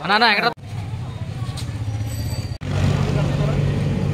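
A short burst of a raised voice, then a low steady motor hum with faint voices behind it. The sound breaks off sharply about half a second in and again past the middle.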